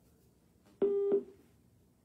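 A short, steady electronic beep about a second in, lasting about a third of a second, over faint room tone.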